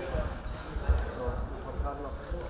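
Voices talking in a large, echoing sports hall, with irregular low thuds, the loudest a little under a second in.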